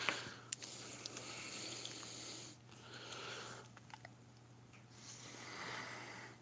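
A man's faint breathing and blowing in three breathy bursts, the last with his hands cupped over his mouth, with a few small clicks between them.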